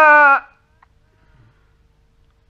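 A man's voice holding the wavering final note of a phrase of chanted Quran recitation (tajwid). The note cuts off about half a second in, leaving a pause with only faint hiss and a low hum.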